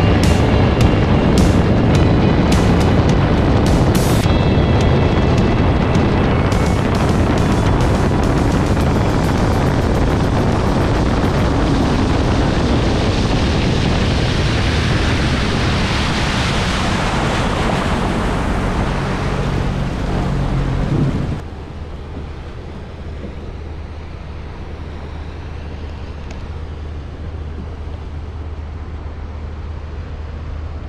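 Sea-Doo personal watercraft running at speed, with water spray and wind on the microphone and music over it. About two-thirds of the way through the sound drops suddenly to a quieter low steady engine drone with wind.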